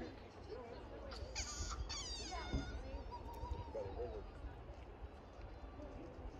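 Distant voices of people climbing the rock slope, with a high-pitched call about a second in that falls away over the next second or so. A steady low rumble of wind on the microphone runs underneath.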